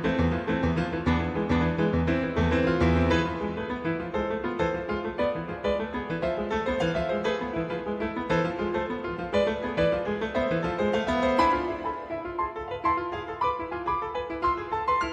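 Solo piano played on a digital keyboard: a fast, dense flow of notes, with heavy repeated bass notes for the first three seconds or so and lighter, higher passages after that.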